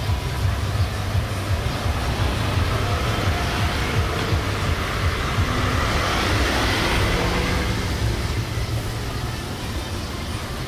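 Road traffic passing close by: scooters, then a car whose sound swells and fades, loudest about six to seven seconds in, over a steady low rumble.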